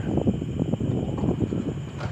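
Irregular clicks and rattles of hands working the plastic casing and top cover of an Epson L120 printer.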